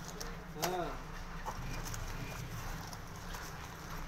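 Busy market background: a steady hubbub of voices and bustle, with a short, loud pitched call that rises and falls about half a second in.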